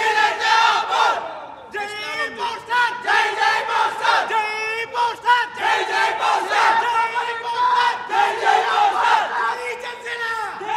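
A crowd of men shouting and chanting together, loud and continuous, with a short dip just before two seconds in.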